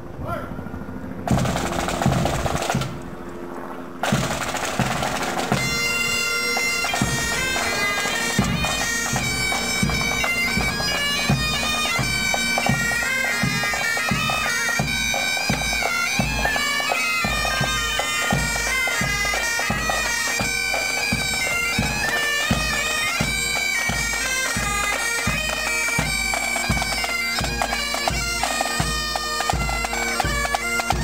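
Pipe band playing a march: highland bagpipes carrying the melody over their steady drones, with the bass drum beating an even march time. The pipe melody comes in about four seconds in, after a short loud opening of drumming.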